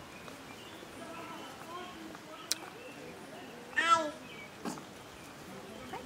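A toddler's short, high-pitched squeal about four seconds in, over faint background chatter.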